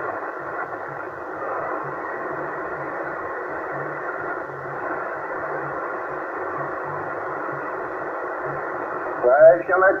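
Yaesu HF transceiver on the 27 MHz CB band, its speaker giving steady, narrow-band static hiss with no clear signal. A man's voice comes in near the end.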